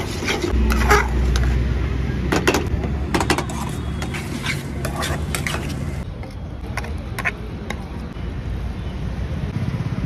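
A steel spoon clanking and scraping against a steel kadai while noodles are stirred and tossed: repeated sharp metal knocks, thicker in the first half. A steady low rumble runs underneath.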